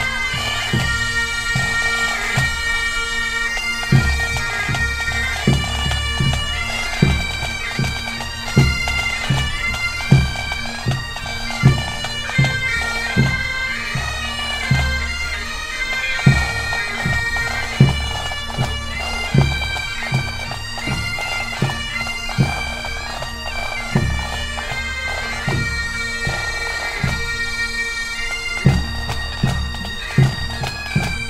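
Pipe band playing: Highland bagpipes sounding a melody over steady drones, with a bass drum striking heavily about every second and a half.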